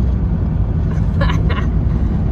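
Car interior road and engine noise while driving: a steady low rumble heard inside the cabin.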